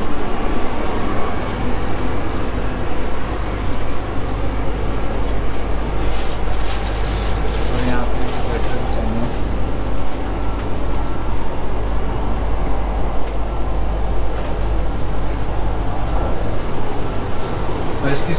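Steady low rumble and hiss inside an ETS electric train carriage, with a few light clicks and knocks a few seconds in.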